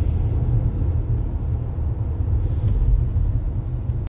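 Steady low road and tyre rumble inside the cabin of a Lynk & Co 01 plug-in hybrid SUV driving at cruising speed.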